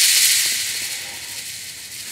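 A high hissing wash of noise from the drama's soundtrack, loudest at the start and fading away, with no clear tone or beat.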